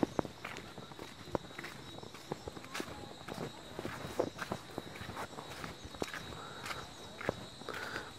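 Footsteps on a dirt hillside path: faint, irregular scuffs and crunches, about two steps a second.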